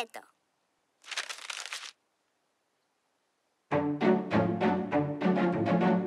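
A brief rustle, then a pause, then a string quartet of violins and cello starts playing near the end in short, even strokes, about four a second.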